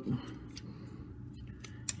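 Parts of a Transformers add-on toy foot clicking lightly as they are handled and pried at, with one sharper click near the end.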